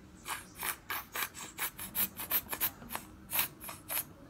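Quick rasping rub strokes, about four a second, irregular in strength, from hands rubbing or handling something during makeup application.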